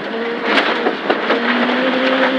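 Proton Satria 1400's 1.4-litre four-cylinder engine running hard, heard from inside the rally car's cabin. The steady engine note breaks briefly about a second in, over a constant rumble of tyres on gravel and a few sharp knocks from stones and bumps.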